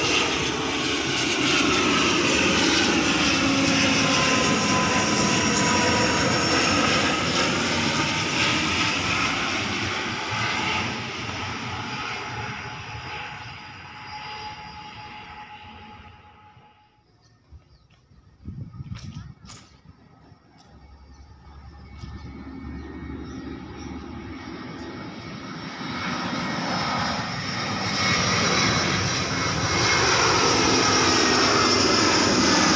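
A twin-turboprop airliner passes low overhead, its propeller tones sliding down in pitch as it goes by, then fading away. After a short quiet gap with a few clicks, a jet airliner on approach grows steadily louder near the end.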